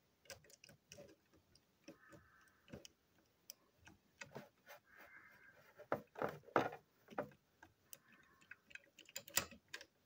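Screwdriver clicking, tapping and scraping against the plastic and metal chassis of a toy model train as it is taken apart, irregular sharp clicks with a few brief scraping passes.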